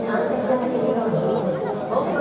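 Crowd chatter: several spectators' voices talking over one another, with no single clear speaker.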